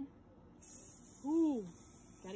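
Aerosol hairspray can spraying: a steady high hiss that starts about half a second in and keeps going. About a second and a half in, a voice gives one short rising-then-falling 'ooh', the loudest sound.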